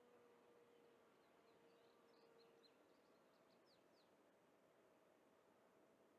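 Near silence: faint outdoor background hiss with a few short, faint, high bird chirps from about one and a half to four seconds in, and a faint steady tone that fades out before halfway.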